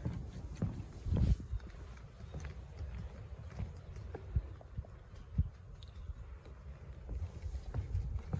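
Footsteps on wooden boardwalk planks: uneven dull thuds, one or two a second, over a low rumble.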